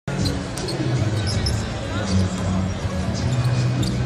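Basketball being dribbled on a hardwood court during live play, over steady background music.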